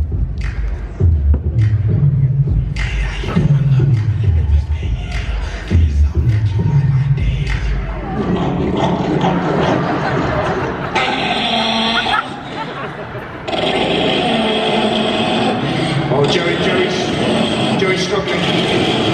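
Soundtrack of a short comedy video clip played over a large hall's loudspeakers. A voice over rhythmic low pulses fills the first half, then a fuller mix of voices and music follows, dropping away briefly about two thirds of the way through.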